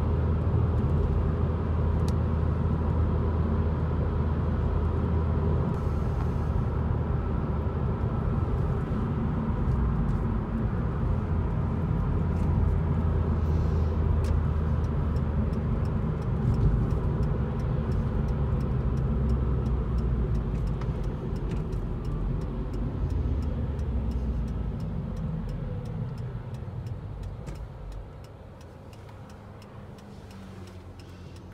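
Steady road and engine noise inside a moving car's cabin, a low rumble and hum. It fades near the end as the car slows to a stop.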